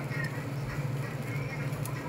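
Steady low hum of a ventilation fan, with a faint clink near the end.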